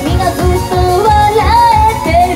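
Female idol group singing live over a backing track with a steady driving beat, about three beats a second.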